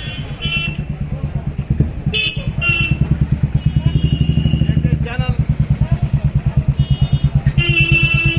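Motorcycle or scooter engine running close by with a steady putter of about ten pulses a second, with a few short horn toots in the street traffic.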